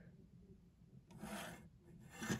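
Near silence, then about a second in a brief rub of plastic on the tabletop as a brick-built toy sleigh is slid and turned by hand.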